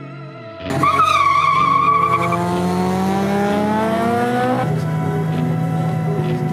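A drag car launching hard: a sudden tyre squeal from wheelspin, then the engine note climbing steadily in pitch for about four seconds as the car accelerates away.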